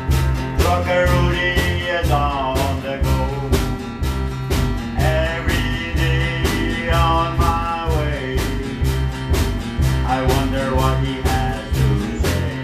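Country-style song played live by a small band: acoustic guitar, electric bass and a drum kit keeping a steady beat of about two to three hits a second, with a sung vocal.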